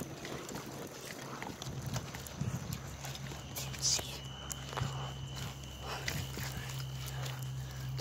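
Bicycle rolling over a rough paved road, with scattered clicks and rattles from the bike and the handheld phone. A low steady hum sets in about two and a half seconds in, and a faint high steady whine joins it about a second later.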